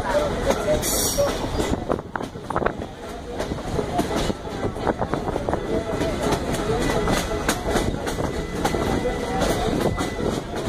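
Passenger train rolling along the track, heard from on board: a steady rumble of the wheels on the rails with irregular clicks and knocks.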